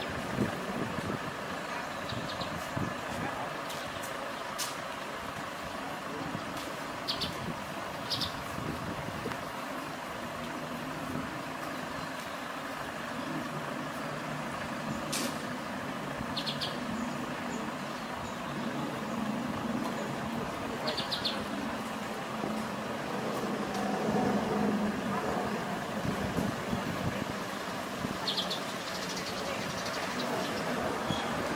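Engine of a parked Toyota van ambulance idling steadily, with a few short high chirps now and then.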